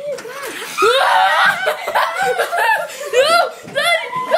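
Several people laughing and snickering together, their voices overlapping, with bits of unclear talk.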